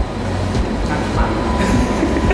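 Low rumble and irregular knocking rattle inside a moving Ferris wheel capsule, with a faint steady whine coming in about halfway through.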